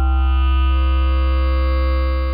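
ModBap Osiris digital wavetable oscillator holding one steady low note, playing waves sampled from a Xaoc Devices Odessa digital additive oscillator. It has a bright tone rich in upper harmonics, and the mix of harmonics shifts as the wavetable is scanned.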